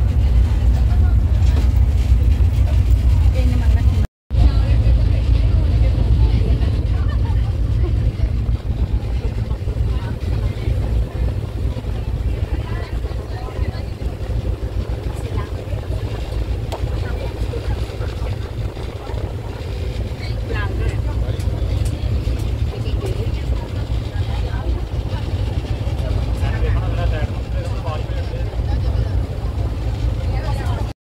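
Steady low rumble of a moving passenger ferry underway, its engine and the rush of the ride running on without change, with faint voices in the background.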